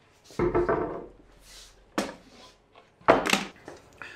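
Wooden boards and plywood being moved and set down on a wooden workbench: a scrape early on, a sharp knock about two seconds in, and the loudest knock a little after three seconds.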